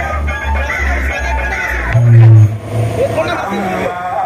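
Large competition sound-box system, with racks of power amplifiers driving speaker boxes, playing music with heavy, pulsing bass. The loudest bass note comes about two seconds in.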